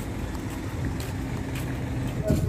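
Steady low rumble with a faint, even hum, typical of vehicle engines idling nearby.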